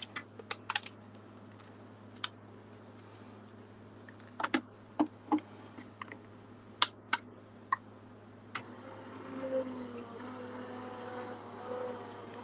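Sharp clicks and clacks of metal cutting plates and a magnetic die plate being handled and stacked, then, about two-thirds of the way through, an electric die-cutting machine's motor starts and hums steadily as it draws the plate sandwich through its rollers.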